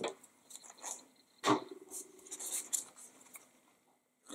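Cardstock being handled and set down on a craft mat: paper rustling and light tapping, with a knock about one and a half seconds in, then soft scratching of card.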